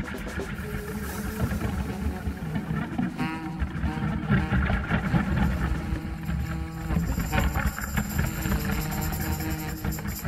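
Instrumental jazz from a saxophone, keyboards and drums trio, with a full low end and held notes over it.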